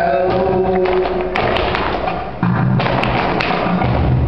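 Live flamenco alegrías: a voice holding a sung line at first, then, from about a second and a half in, sharp percussive strikes and heavier thumps over the guitar.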